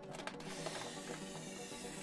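Background music, with a steady hiss of air being blown into an MPOWERD Luci inflatable solar lantern that fades out at the very end.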